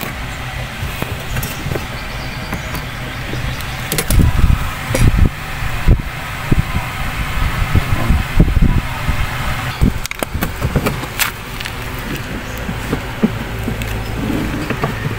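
Irregular knocks, clunks and clicks of metal parts being handled as the spin motor's shaft is aligned with the spin basket shaft of a twin-tub washing machine. A steady low hum runs underneath.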